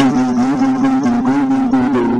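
A steady, low droning tone with many wavering, shifting overtones, heard as music.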